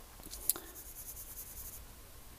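Graphite pencil scratching on drawing paper in repeated short strokes, faint, with one sharper tick about half a second in.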